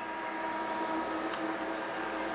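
Cryolipolysis (fat-freezing) machine's vacuum suction running: a steady hum with a hiss as the cup applicator draws the skin and fat of the abdomen into the cup.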